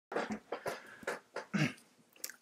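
Short irregular rustles and bumps of a person shifting close to the microphone, with a brief low voiced sound, falling in pitch, near the end.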